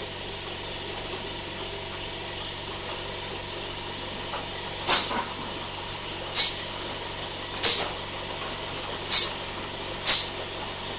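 Steady hum of a can palletiser. From about five seconds in, four short, sharp hisses of compressed air come about a second and a half apart, as its pneumatic cylinders and valves exhaust.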